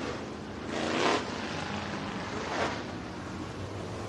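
Super Late Model dirt-track race car engine running at speed on the track, swelling as a car passes about a second in, with a smaller rise a little after two and a half seconds.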